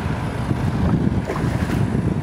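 Wind buffeting the microphone on a moving shikara boat, a loud, uneven low rumble over the open-water ambience of the lake.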